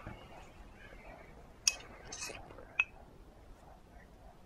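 Two sharp clicks of a small feeding spoon about a second apart, the second with a brief ring, and a short breathy hiss between them, while a baby is spoon-fed.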